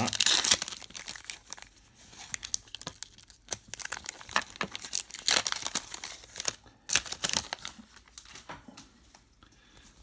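Shiny foil trading-card pack wrapper being torn open and crinkled in the hands, a run of irregular crackles with louder bursts at the start and again around the middle.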